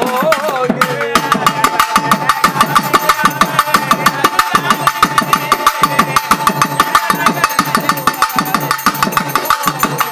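Pambai and udukkai drums playing a fast, even beat in an instrumental passage of a Tamil Amman song, with a single high note held over it. It takes over from a sung line that ends just after the start.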